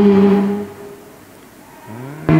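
A slow hymn: a held note dies away less than a second in, a short lull follows, and the next phrase starts with an upward slide near the end.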